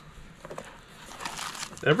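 Plastic wrapping crinkling and cardboard rustling as a wrapped item is lifted out of a cardboard box, soft and irregular with a few light clicks.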